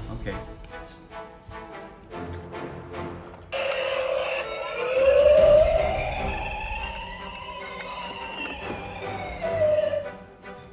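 A siren-like wail that starts suddenly about three and a half seconds in and slowly rises, then falls, over several seconds.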